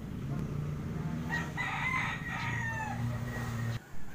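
A rooster crowing once, a long call of about a second and a half that falls in pitch at its end, over a steady low hum.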